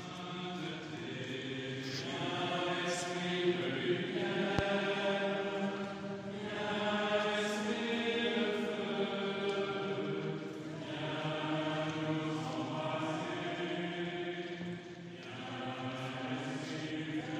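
Liturgical chant sung in a church during a funeral entrance procession: long melodic sung phrases with brief pauses between them.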